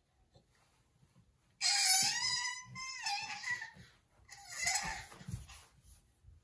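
A baby squealing at a high pitch, twice. The first squeal starts about a second and a half in and lasts about a second and a half, falling away at its end. A second, shorter squeal follows near the end.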